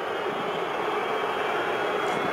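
Steady noise of a large stadium crowd, an even wash of many voices with no single voice standing out.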